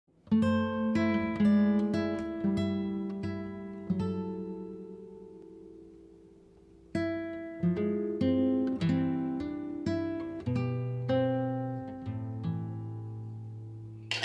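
Background music of a plucked acoustic guitar playing a gentle picked melody. About four seconds in, a note is left to ring out and fade for roughly three seconds before the picking starts again.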